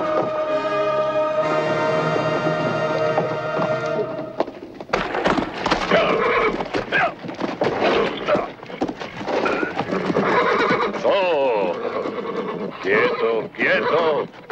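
Background music for about the first four seconds, then it breaks off into a horse neighing again and again, with hooves on packed dirt and men's shouting voices.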